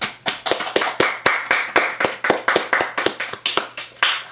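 A few people clapping by hand, separate claps at about five a second.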